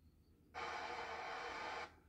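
A burst of hissing, like steam or air venting, that starts suddenly and cuts off about a second and a half later. It is a sound effect played through a TV speaker.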